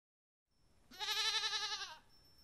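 A young goat bleating once, about a second in: a single quavering call lasting about a second.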